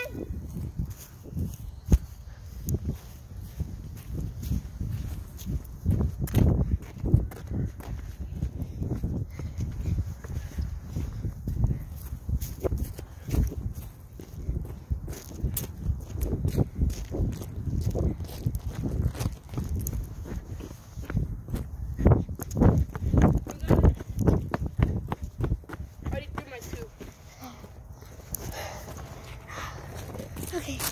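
Handling noise from a phone being carried and jostled: a low rumble with irregular knocks and clicks, some of them footsteps.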